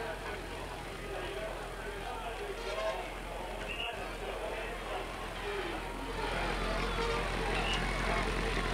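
Roadside crowd shouting and cheering as the racing cyclists pass, many voices at once. Underneath is a steady low hum, with a low rumble that grows louder about six seconds in.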